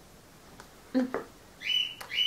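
A bird's short high chirp, sweeping up and then held briefly, near the end, one of a run of such chirps repeating about every half second; a woman's brief 'mm' about a second in.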